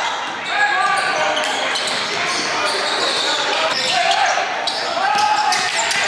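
Live basketball game sound in a gym: a basketball bouncing on the hardwood floor, echoing in the large hall, among voices of players and spectators.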